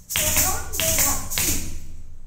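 Kathak footwork: three foot stamps on a hard floor, evenly spaced, each with a jingle of ankle bells (ghungroo).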